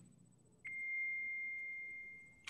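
A single steady electronic beep, one pure high tone that starts suddenly a little over half a second in and holds for about a second and a half before fading.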